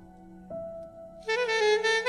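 Slow, calm instrumental relaxation music: a soft held note, then a bright, sustained melody line comes in a little past halfway through.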